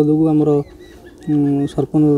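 A man's voice speaking, in two stretches with a short pause about a second in.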